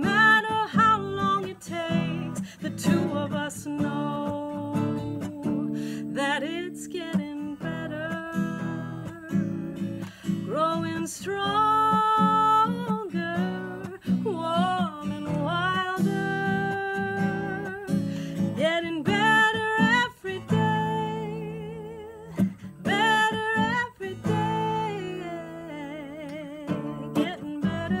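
A woman singing over a strummed acoustic guitar, with some held notes sung with vibrato.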